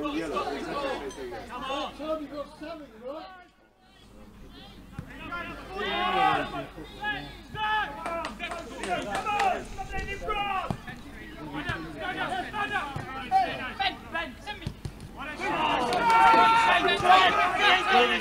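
Footballers and onlookers shouting and talking on the pitch, unclear and off-microphone, with a short break about three and a half seconds in. The shouting grows louder near the end.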